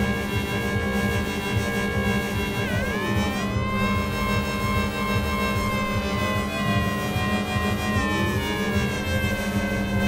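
Make Noise Morphagene granular sampler module playing a sustained, layered synth sound while a sine wave through an Optomix phase-modulates it. Held tones sit over a steady low hum, with pitch sweeps bending down and back up about three seconds in and again near eight seconds.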